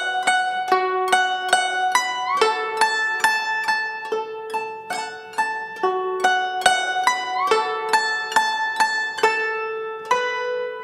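AI-generated guzheng-style plucked zither melody, a steady run of single plucked notes ringing out, with a few notes bent upward in pitch.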